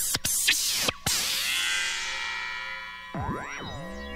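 Electronic music on synthesizers: abrupt chopped bursts of sound in the first second, then a sustained cluster of tones fading slowly. Near the end a tone swoops down in pitch and back up, then settles into a held note.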